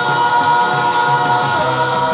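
Uzbek folk-pop song: several male voices hold long notes together in harmony, backed by a band with a repeating bass line and light percussion. About one and a half seconds in, the held chord steps down to a lower note.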